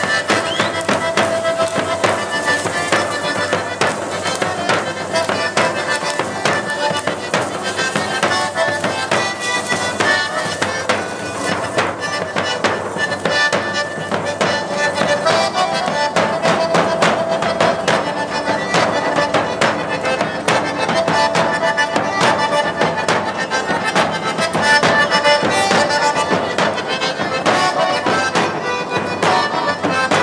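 Live matachines dance music: large bass drums beaten in a fast, steady rhythm under a repeating melody.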